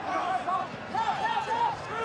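Raised voices shouting in a run of short, high-pitched calls over a steady background of stadium crowd noise during a rugby ruck.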